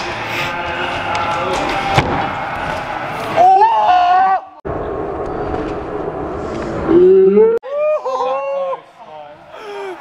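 Young men shouting and whooping over the busy, echoing noise of an indoor skatepark, with a sharp knock about two seconds in and an abrupt cut midway.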